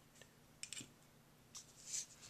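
Faint handling sounds: a couple of light clicks about half a second in, then a short rustle and click near the end as needle-nose pliers are picked up off a cloth-covered table.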